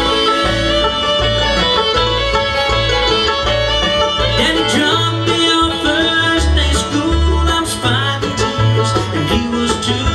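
Live bluegrass band playing an instrumental break between sung verses: banjo, fiddle, mandolin, acoustic guitars and upright bass over a steady beat.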